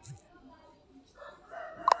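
A bird's call that builds from about a second in and rises to a sharp, loud peak near the end.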